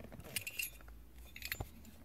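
Plastic wiring-harness connector being worked onto a car's blower motor control module by hand, giving a few light clicks and rattles and a sharper click about one and a half seconds in.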